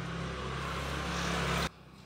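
Handheld angle grinder running and cutting into stainless steel square tube: a steady motor hum under a hiss that grows slightly louder, then cuts off suddenly near the end.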